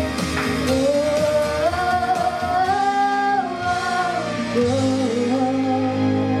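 A young girl singing a pop ballad in French into a microphone over a backing track, holding long notes that step up and down in pitch.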